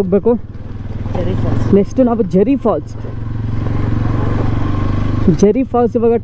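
Motorcycle engine running steadily at low road speed, with a noise that swells between about three and five seconds in.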